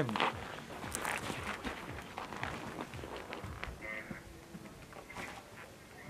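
Footsteps crunching on snow, with scattered clicks and rustles that grow fainter toward the end.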